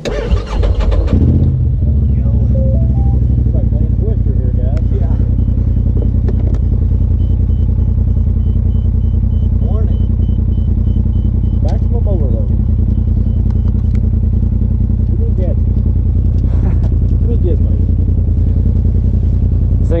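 Polaris RZR side-by-side engine catching on a jump start from a portable jump starter, its dead battery boosted, then idling steadily.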